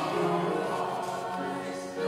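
Choir singing slow church music, with long held notes.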